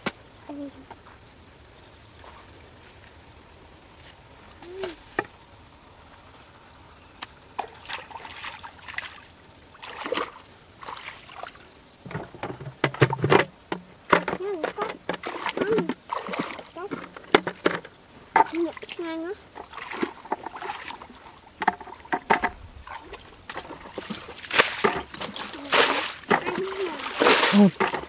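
Hands splashing and sloshing in shallow muddy water in irregular bursts. The bursts are sparse at first and grow busier from about a quarter of the way in.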